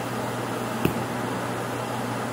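Steady room noise: an even hiss with a constant low hum, as from a fan or air conditioner running, broken by a single light click about a second in.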